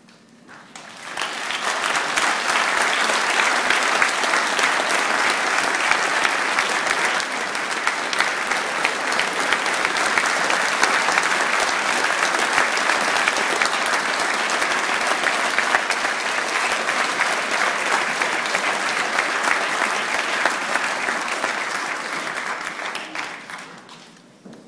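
Audience applauding: the clapping swells up about a second in, holds steady and dense, and dies away near the end.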